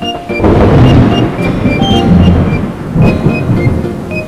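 Thunder sound effect: a long rolling rumble that swells about half a second in and again near three seconds, with rain hiss, over light background music.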